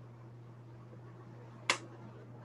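A single short, sharp click near the end, over a faint steady low hum in the audio line.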